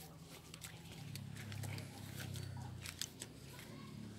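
Faint footsteps crackling over dry fallen palm fronds and debris, scattered light clicks over a low rumble that swells for a couple of seconds in the middle.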